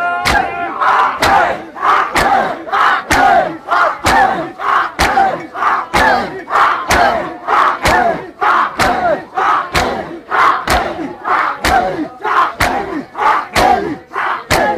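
Crowd of men doing matam: hands slapping bare chests together in a steady rhythm about twice a second, with many voices chanting loudly in time between the slaps.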